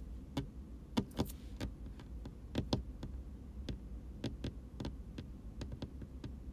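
About a dozen light clicks and taps at irregular intervals, the loudest about a second in and near the middle, over a steady low hum.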